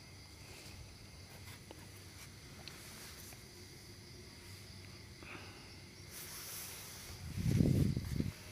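Night insects trilling steadily at a high pitch, with a brief, louder low-pitched rumble near the end.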